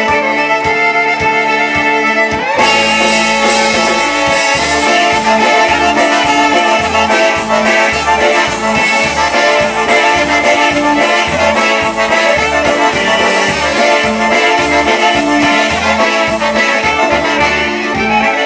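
Live polka band playing an instrumental passage: fiddle and accordion carry the tune over trumpet, electric bass and drums, with a steady two-beat bass pulse. The full band and cymbals come in about two and a half seconds in.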